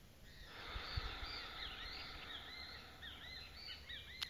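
Small birds chirping: short rising-and-falling chirps, about three a second, over a steady hiss.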